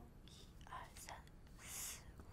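A woman whispering quietly in a few short, breathy puffs, counting under her breath.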